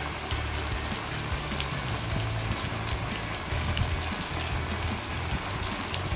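Water spray from low-flow 15 VAN sprinkler heads falling on wet glass solar panels: a steady hiss with faint scattered patters. Wind buffets the microphone in a low, uneven rumble.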